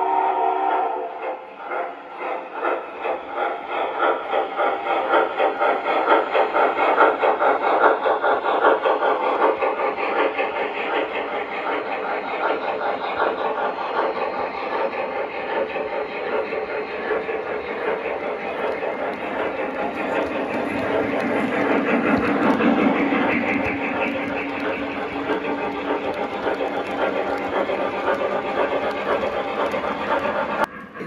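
Sound-equipped O-gauge model steam locomotives running. A steam whistle ends about half a second in, then a steady, pulsing chuff rhythm runs with the rumble of cars on three-rail track.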